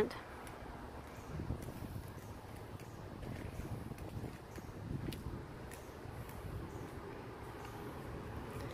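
Faint outdoor background noise with a few soft, irregular low thuds from footsteps and phone handling as someone walks around a parked car.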